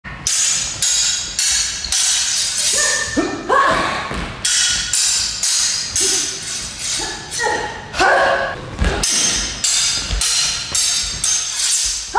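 Steel stage cutlass blades clashing again and again, about two strikes a second with a bright metallic ring after each, as a choreographed sword fight phrase runs on, with a few brief vocal shouts around three and eight seconds in.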